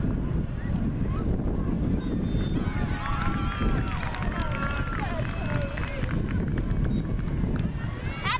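Distant voices calling across an outdoor soccer field, heard faintly over a steady low rumble, loudest in the middle of the stretch.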